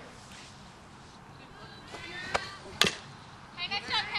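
Two sharp knocks at a softball field, about half a second apart, the second louder. Faint voices start up near the end.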